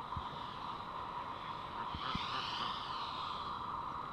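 Steady outdoor background noise, with a faint higher sound that arches up and down about halfway through.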